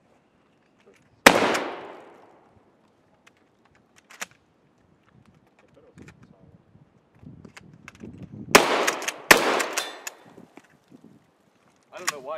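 Pump-action shotgun firing: one loud report with a long echoing tail about a second in, a few light clicks and clatter of the action and shells, then two more loud sharp reports under a second apart near the end.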